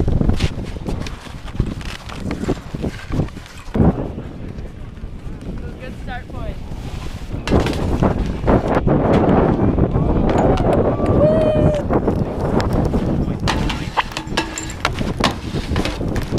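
Wind rumbling on the camera microphone while skiing, with skis scraping over wet snow, growing louder about halfway through. A few sharp knocks and faint voices sound in the background.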